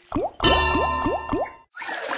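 Online slot game's sound effects as a spin plays out: a thud, then four quick rising glides about a quarter second apart over ringing tones, which stop abruptly; near the end a hissing, watery-sounding effect starts.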